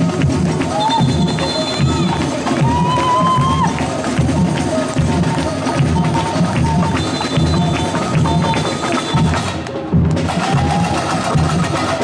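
Live samba parade percussion (bateria) playing: a regular beat of deep surdo bass drums under quick, sharp hand-percussion strikes, with higher melodic lines wavering above.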